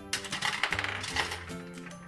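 Dubble Bubble toy gumball bank turned with a quarter in it: the coin and the dispensing mechanism give a quick run of metallic clicks as a gumball is let out. Background music plays underneath.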